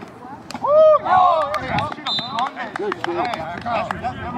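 Several people shouting and yelling at once in excited bursts, loudest about a second in. Several sharp smacks are mixed in.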